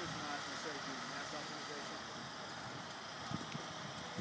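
Faint, indistinct voices talking in the first second or so, over a steady outdoor background hiss.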